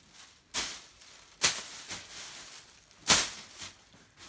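Clothes being handled and moved about: three short, sharp rustles, the loudest about three seconds in.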